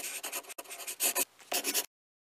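Scratchy writing sound of a pen on paper, in several short strokes, accompanying handwritten text appearing on screen; it cuts off suddenly just before the end.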